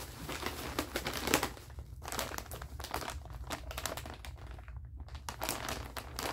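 Plastic packaging crinkling and rustling in irregular handfuls as a bag of cotton candy is pulled out and handled, with brief lulls about two seconds in and near five seconds.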